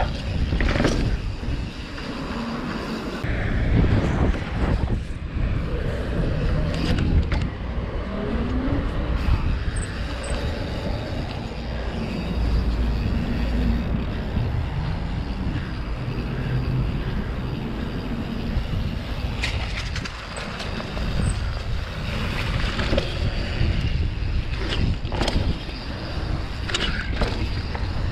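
A Canyon Torque full-suspension mountain bike being ridden on pavement: wind rushing over the camera microphone with the knobby tyres rolling, and clattering knocks from the bike in the first few seconds as it goes down a flight of concrete steps.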